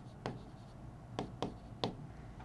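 Marker pen writing on a whiteboard: faint strokes with a few short, sharp ticks as the pen touches and lifts from the board.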